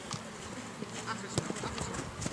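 A football kicked once, a short sharp thump about one and a half seconds in, over faint open-air background noise.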